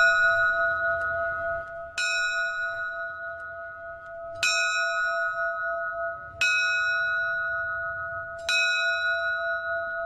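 The Amistad's ship's bell, a metal bell engraved "AMISTAD 2000", is struck about every two seconds, four times. Each stroke rings on with a steady tone that runs into the next stroke, and the ringing of a stroke just before carries in at the start.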